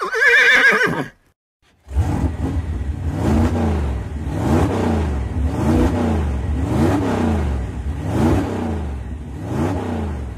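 Novelty sound effects: a short, wavering, whinny-like call lasting about a second, then a brief silence. After that comes a steady low motor-like drone whose pitch swoops up and down about once a second.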